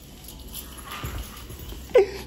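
Faint laughter and rustling handling noise, ending in a short, sharp knock as the camera is grabbed.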